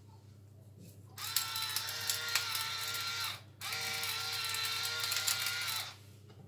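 Electric pepper mill grinding black peppercorns in two bursts of about two seconds each, its small motor whining steadily over the crunch of the grinder.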